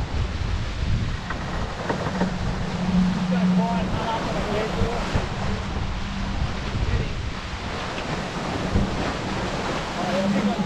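Wind buffeting the microphone and water rushing and splashing along the hull of a Fareast 28R sailboat surging downwind under spinnaker, with a steady low hum that comes and goes.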